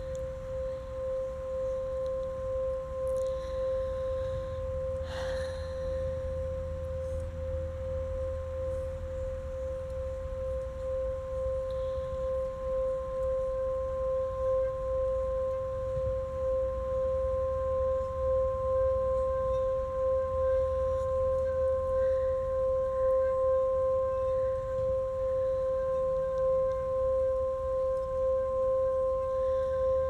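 Small metal singing bowl sung by rubbing a wooden mallet around its rim: one steady ringing tone with a fainter higher overtone, pulsing gently and slowly swelling louder.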